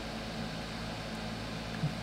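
Steady low hum with a faint, even hiss: background noise of the recording, with no other event.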